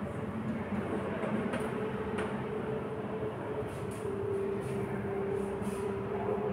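A steady low hum and rumble with a couple of level tones, and faint taps and scratches of chalk writing on a blackboard.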